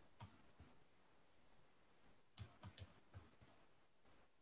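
A few faint computer mouse clicks: one just after the start, then a quick run of three about two and a half seconds in, with a couple of softer ones after.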